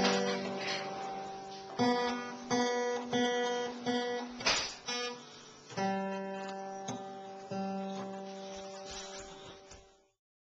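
Acoustic guitar's open strings strummed unevenly by a toddler's hand: a string of separate strums, roughly one a second, each left to ring and die away. The ringing fades out near the end.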